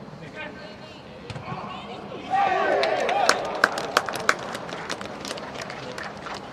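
Several voices shout together in celebration of a football goal about two seconds in, followed by scattered hand claps over the next few seconds.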